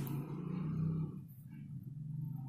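A low droning hum made of steady bass tones that shift slightly in pitch a few times and drop in level about a second in.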